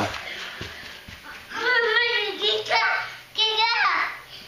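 A young child's high-pitched, wordless vocalizing: three short voice sounds in the second half, the last one sliding down in pitch.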